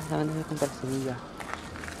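Speech: short spoken phrases from a person's voice, over steady background noise.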